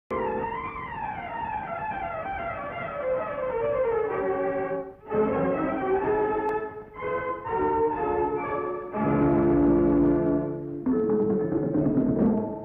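Orchestral introduction to a 1960s Tamil film song. A long falling melodic run fills the first four seconds or so, then come short phrases broken by brief pauses near five and seven seconds, and a fuller passage near the end.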